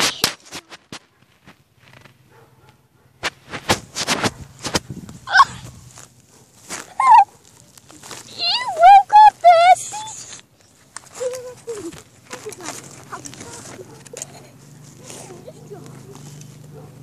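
High, wavering vocal squeals without words, a few short calls between about five and ten seconds in, amid scattered knocks and rustles.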